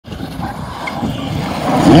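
Volkswagen Polo GTI R5 rally car's turbocharged 1.6-litre four-cylinder engine approaching, growing steadily louder, its rising engine note coming in clearly near the end as it reaches the junction.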